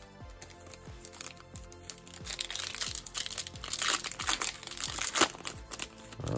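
Plastic-foil wrapper of a 2021 Topps Stadium Club baseball card pack crinkling as it is torn open and the cards are pulled out, a few light crackles at first, then dense, louder crinkling from about two seconds in.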